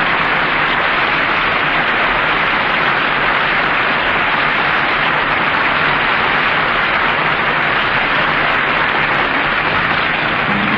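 Steady, loud hiss of static in an old radio broadcast recording, even throughout with no pitch or rhythm.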